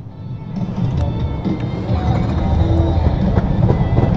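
Yamaha Sniper 155 scooter-style motorcycle pulling away, its engine and wind rumble on the helmet microphone rising over the first two seconds and then running steadily.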